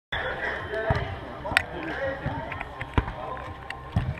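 A footvolley ball struck a few times by players during play, sharp short thuds against a background of people's voices.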